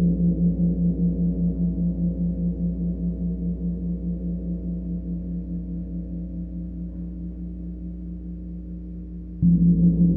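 A low gong ringing out after a strike and slowly fading, its tone wavering about four times a second. It is struck again near the end.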